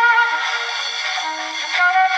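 Recorded music playing from an iPhone's speaker through a passive horn amplifier made from a trumpet bell. It is thin, with no bass, and carries held melodic notes.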